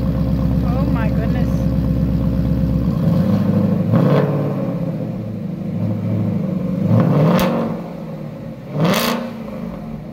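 Ford Mustang exhaust through Ford Performance sport mufflers: the engine idles with a strong, deep drone that drops to a lower, quieter idle about three seconds in. It is then revved three times in short blips, about four, seven and nine seconds in, each rising in pitch and falling back to idle.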